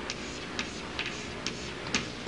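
Chalk tapping and scraping on a chalkboard as a drawing is sketched: about five short clicks, roughly two a second, over a faint hiss.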